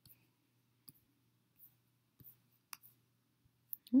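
Faint, scattered clicks of a computer mouse, about half a dozen at irregular intervals, over a faint low hum.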